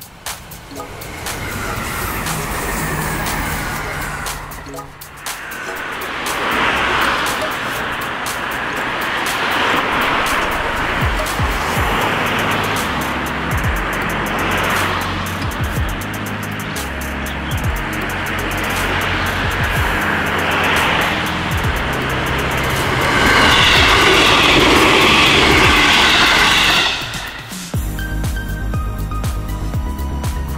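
Background music over the running noise of a passing JR Kyushu 787 series electric train. The rushing train noise swells and fades, is loudest near the end, and then cuts off abruptly.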